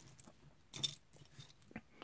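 Small plastic Lego pieces clicking against each other as fingers pick through a loose pile, with one sharper click a little under a second in and a fainter one near the end.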